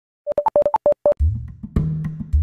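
Electronic intro jingle: a quick run of about eight short high beeps, then music with a deep bass beat and drum hits coming in just over a second in.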